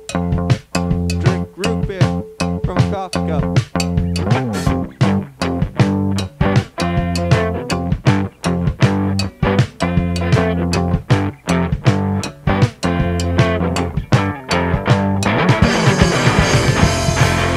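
Instrumental punk rock passage: bass guitar and electric guitar playing over a steady drum beat, with no vocals. Near the end the band moves into a denser, noisier section.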